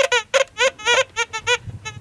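Gold Bug 2 VLF metal detector giving a quick run of about a dozen short beeps, each rising and falling slightly in pitch, as the coil sweeps over targets in heavily mineralized, iron-rich rock.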